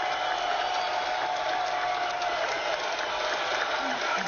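Recorded crowd applause played as a sound effect, a steady, even clapping.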